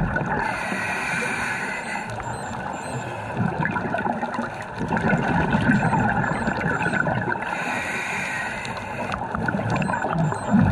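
Scuba diver breathing through a regulator underwater: a hiss on each inhale alternating with a gurgling rush of exhaust bubbles on each exhale, two slow breaths.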